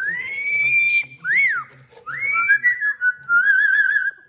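Amazon parrot whistling: a long held note that rises at the start, a short rise-and-fall note, another held note, then a quick wavering trill near the end.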